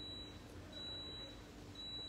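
Faint background hiss with a thin, steady high-pitched whine running throughout.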